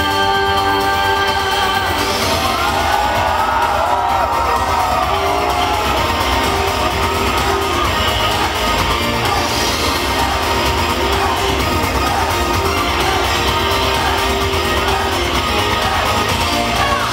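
Live concert music played loud over a hall PA system, with a crowd cheering and shouting along over it.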